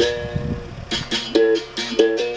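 Berimbaus, steel-string musical bows with gourd resonators, struck with sticks in a rhythmic pattern of sharp, ringing notes that switch between two pitches, with caxixi basket rattles shaking on the strokes. A low bass note swells about half a second in.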